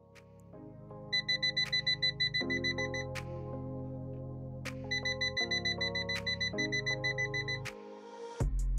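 A digital multimeter's non-contact voltage beeper beeping rapidly, about five high-pitched beeps a second, in two runs as it picks up the electric field of a live mains socket. Background music plays underneath.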